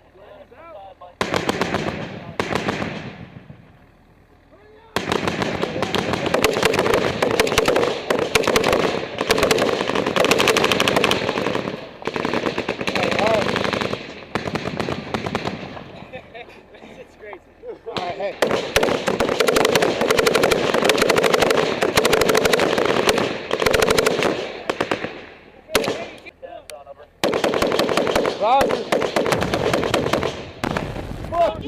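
Machine gun firing long, rapid bursts: a short burst about a second in, then near-continuous fire for about ten seconds, a short break, another long stretch of fire, and more near the end.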